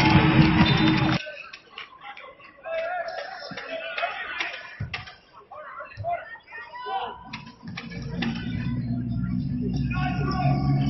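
Basketball arena sound: loud music and crowd noise that cut off abruptly about a second in, then a quieter stretch of scattered voices and a few sharp clicks, with music starting up again near the end.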